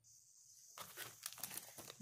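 Faint crinkling of a clear plastic sleeve around a cross-stitch chart as it is handled, a scatter of small crackles that grows busier about a second in.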